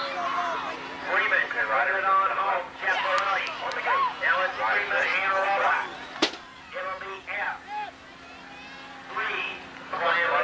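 Indistinct speech from the race announcer over the public-address system, with a steady low hum underneath. There is a sharp click about six seconds in, and the voices thin out in the last few seconds.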